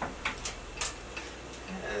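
A utensil tapping and scraping in a frying pan as scrambled eggs and greens are stirred together: a few light, irregular clicks.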